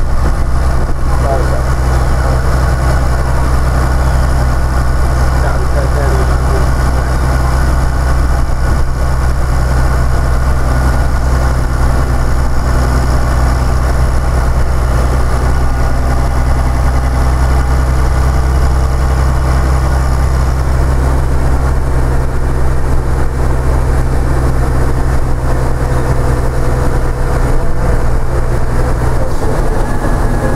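Diesel engine of an East Lancs Lolyne double-decker bus, heard from inside the bus, running at a steady idle with a deep, even hum. The engine note changes shortly before the end.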